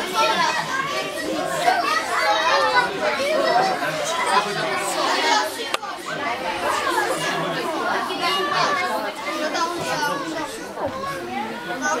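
Many children's voices chattering and calling out at once, indistinct, echoing in a large hall.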